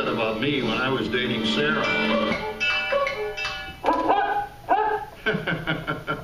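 Show music playing, then a recorded dog barking and yipping a few short times in the second half, from the theatre's animatronic dog.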